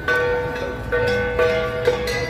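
Cordillera flat bronze gongs (gangsa) struck in ensemble, four strokes, each ringing on with a bright metallic tone until the next.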